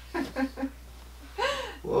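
Speech only: a few short voice sounds, then a loud exclamation of "Whoa!" near the end.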